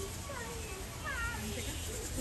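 Background voices of people talking, high gliding voices like children's among them, over a steady low rumble.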